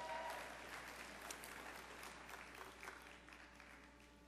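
Audience applause from a crowd, fading away over the few seconds.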